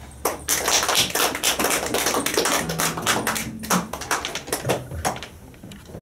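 A small audience clapping after a song, with many quick, irregular claps that thin out near the end.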